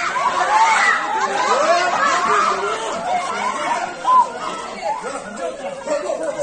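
Crowd chatter: many people talking over one another at once, with one brief louder moment about four seconds in.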